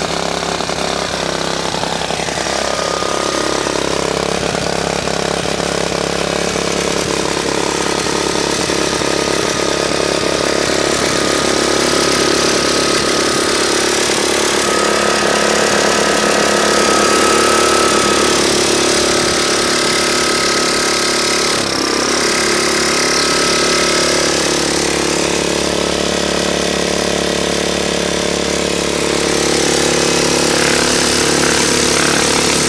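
Tecumseh 4.5 HP single-cylinder four-stroke small engine running steadily, fed through a GEET fuel processor on a mix given as about 75% water and 25% gasoline; its speed rises and falls gently every few seconds.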